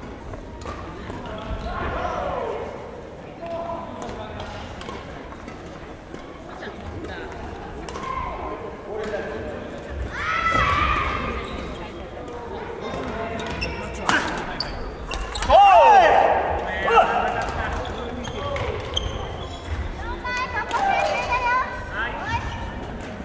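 Badminton doubles rally in a large sports hall: sharp racket strikes on the shuttlecock and footfalls on the wooden court floor, with players' short calls echoing. The loudest moment is a call about two-thirds of the way through.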